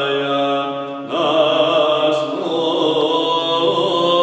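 Male voices singing Byzantine chant in the Saba mode: a slow melismatic line over a steady held drone note. About a second in, the line breaks briefly, and the next phrase enters with an upward slide.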